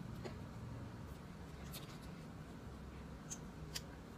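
Faint handling sounds of a SACE LADY mascara tube being twisted open and its wand drawn out: a few soft, scattered clicks over quiet room noise.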